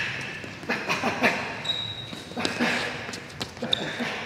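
A boxer shadowboxing at speed on a hardwood gym floor: quick, irregular footfalls and sneaker squeaks, mixed with short sharp breaths on the punches. A thin squeak is held for about a second near the middle.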